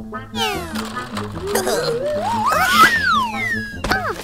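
Cartoon background music with a steady bass line, under comic sound effects and a wordless character cry: a quick burst of falling whistle-like glides near the start, then a wavering cry that rises in pitch and falls away near the end.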